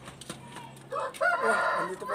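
Rooster crowing: one loud crow beginning about a second in.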